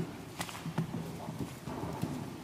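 Papers and a booklet handled at a wooden lectern, with a few light knocks and rustles, and people shifting in a large room.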